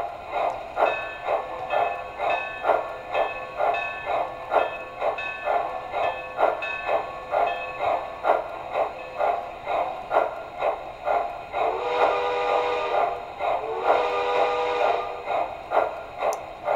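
MTH Southern Crescent Limited PS-4 4-6-2 model steam locomotive's electronic sound system playing steady chuffing, about two chuffs a second, as the engine runs in place on rollers. Near the end, the steam whistle sounds twice.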